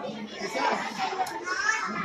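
Overlapping talk from several voices, children's voices among them.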